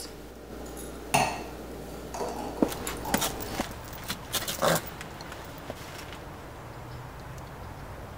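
A few scattered light knocks and clinks over the first five seconds, the sharpest about a second in and just before the five-second mark, then a low steady background.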